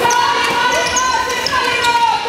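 Handball play on a wooden sports-hall court: a few ball bounces and shoe squeaks, with voices in the hall and a long held pitched sound over them.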